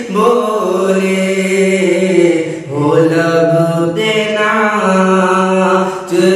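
A man singing a naat, an Islamic devotional song praising the Prophet, in long held notes that slide between pitches, with a short breath break about two and a half seconds in.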